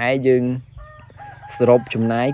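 Chickens calling from a mixed flock of chickens and Muscovy ducks, a crowing rooster among them; the loudest calls come at the start and near the end, with a quieter stretch of thin, high clucks in between.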